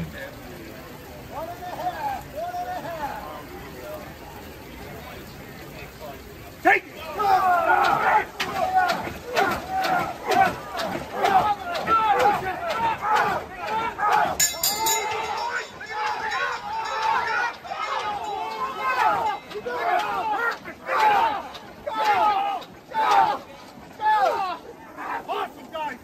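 Crew of a 19th-century hand-pumper fire engine yelling and calling out together as they work the pump handles, over regular knocks of the pump strokes. The shouting breaks out about a quarter of the way in, after a sharp knock, and keeps going almost without a break.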